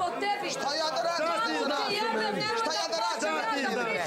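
Several people talking over one another in a heated argument, their voices overlapping throughout.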